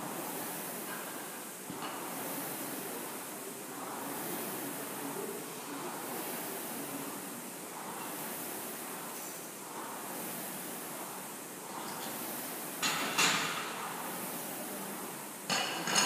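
Air rowing machine's flywheel whooshing in a steady rhythm, one swell with each stroke about every two seconds. Near the end two sharp metallic clanks ring out over it.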